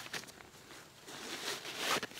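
Faint rustle of a nylon ditty bag being handled, then its drawstring cord pulled to cinch the bag shut, growing louder near the end.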